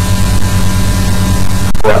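Steady electrical mains hum with its overtones and a constant hiss on the recording, heard in a pause in the talk; a man's voice resumes with a word near the end.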